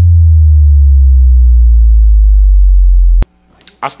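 A loud, deep synthesized tone sliding slowly downward in pitch, the bass drop ending an intro sting; it cuts off suddenly about three seconds in, and a man's voice starts right at the end.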